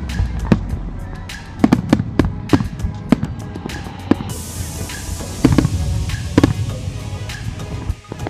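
Aerial fireworks shells bursting in quick, irregular succession, sharp bangs with a low rumble under them, over music. A steady higher hiss comes in a little after four seconds.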